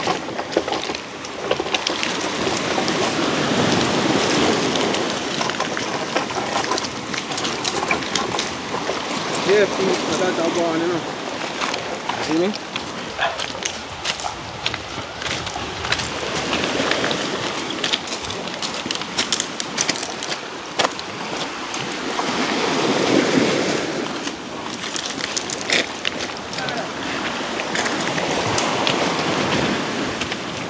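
Small waves washing onto a pebble beach, the surf swelling and easing, with footsteps crunching and clicking on loose stones.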